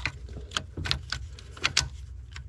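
A string of small, irregular plastic clicks and ticks as the top half of a Fox-body Mustang's multi-function switch is handled and slid onto its pin under the steering column, with wiring brushing against it.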